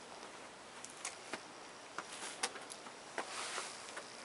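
Faint, irregular clicks and scuffs of footsteps on a concrete path, about eight in all, over a steady faint outdoor hiss.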